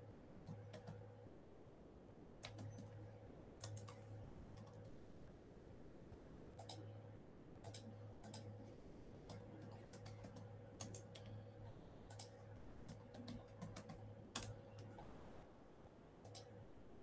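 Faint computer keyboard typing: irregular key clicks in short runs, with a low electrical hum that comes and goes underneath.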